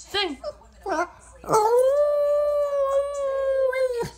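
A Boston terrier howling at a cue to sing: two short rising-and-falling yelps, then from about a second and a half in, one long steady howl held until it breaks off at the end.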